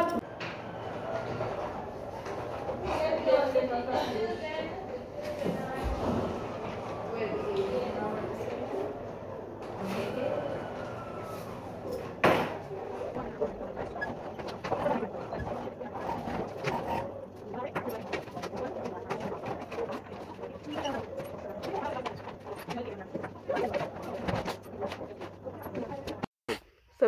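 Voices talking in the background of a room, with a few sharp taps or knocks among them, the clearest about twelve seconds in.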